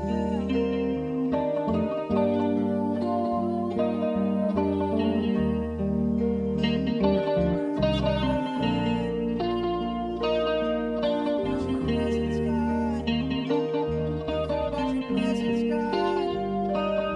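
Live worship band playing held chords on acoustic and electric guitars, bass and keyboard.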